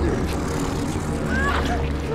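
A steady deep rumble under a person's short, rising, high-pitched cries.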